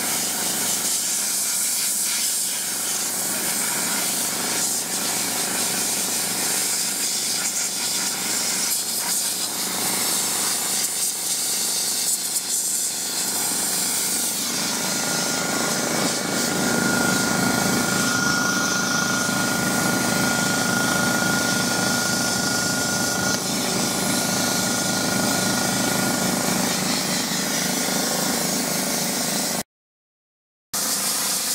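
Sandblaster nozzle blasting with compressed air, a steady loud hiss of air and abrasive. About halfway through, a lower hum and a thin steady whistling tone join it. The sound breaks off for about a second at the very end.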